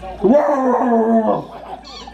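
A single drawn-out whining vocal call, rising at first and then held for about a second.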